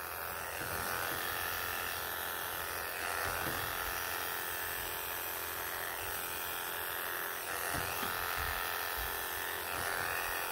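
Wahl KM2 electric animal clippers with a #40 surgical blade running steadily as they shear a long-haired Persian cat's coat, the buzz swelling slightly in loudness every few seconds.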